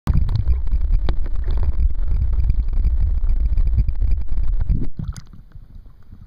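Loud, muffled low rumble and crackle of water against a camera held underwater. It drops away sharply about five seconds in, as the camera comes up out of the water.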